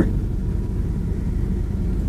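Steady low rumble of room background noise, with no distinct event.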